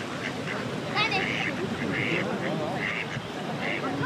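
Ducks quacking on the lake, a run of about four short calls less than a second apart, over background chatter from people.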